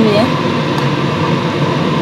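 Steady rushing noise of a stainless pot of water with thin-sliced goat meat heating toward the boil on the stove, as metal tongs stir the meat.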